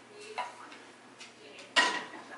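A few light clicks of a kitchen utensil against cookware as cooked chickpeas are spooned onto a tortilla wrap, then one louder, sharper clatter near the end.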